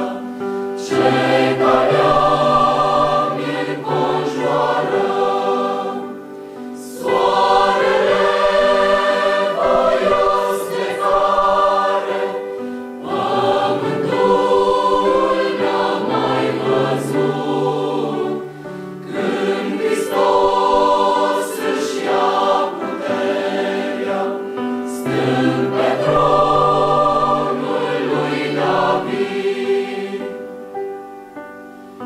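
Large mixed choir of men and women singing, in sustained phrases with brief breaks about every six seconds.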